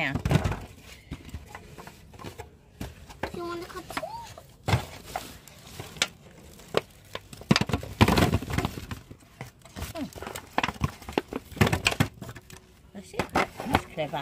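Tomatoes being handled and dropped into a thin aluminium foil tray: irregular knocks and crinkles of the foil, loudest about eight seconds in.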